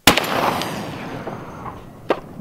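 A single shot from a .50 BMG rifle right at the start, with its loud report rolling away and fading over the next two seconds.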